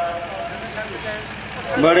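A man preaching through a microphone pauses, leaving a steady background noise, and his voice comes back in near the end.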